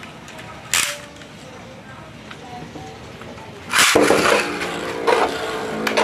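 A Beyblade launcher clicks once about a second in. About four seconds in, the launcher is pulled and sends the Guilty Longinus top into a plastic stadium, where it spins with a steady whirring hum.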